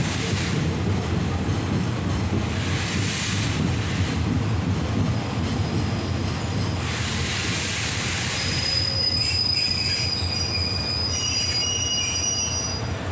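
Passenger carriage rolling slowly into a station with a steady low rumble on the rails. About eight seconds in, a high squeal of several thin tones sets in as the brakes bring the train to a stop.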